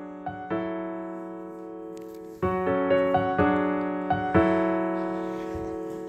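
Piano playing the slow introduction to a ballad: sustained chords that slowly die away, with louder new chords struck about two and a half and four and a half seconds in.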